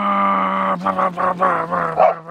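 A man's voice imitating the deceleration sound of the Corsa Extreme exhaust on a Ford Raptor's 6.2-litre V8 when he lets off the gas. It starts as one long held drone, falling slightly in pitch, then about a second in breaks into a rapid stuttering burble of about six pulses a second.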